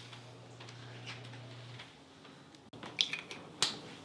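Eggs frying in oil in a stainless steel pan: two sharp pops of spitting fat, about half a second apart, near the end. Before them there is a faint steady low hum.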